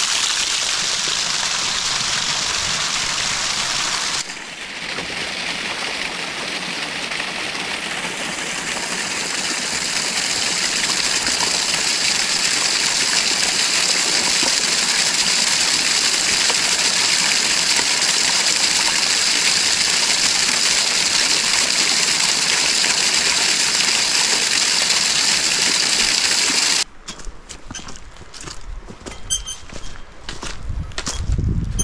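Small spring cascade splashing over mossy rock into a shallow pool: a loud, steady rushing splash. Near the end it cuts off abruptly and footsteps on a dry, leaf-covered path follow.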